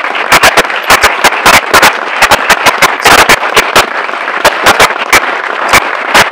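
Audience applauding: a dense run of hand claps, with individual sharp claps standing out above the rest.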